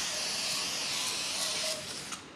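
WD-40 aerosol can spraying through its thin extension straw, a steady hiss that stops near the end.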